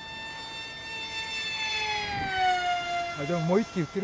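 High-pitched whine of a FunJet RC plane's 2600KV brushless motor and 6.5×5.5 propeller in flight, its pitch sliding down over a couple of seconds. A man's voice comes in briefly near the end.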